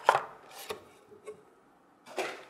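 Paper and packaging being handled on a table: a loud rustle of paper right at the start, then a few lighter clicks and knocks within the next second or so.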